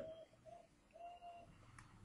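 Near silence, with a faint bird cooing in a few short, steady notes, and a soft click near the end as a plastic binder page is turned.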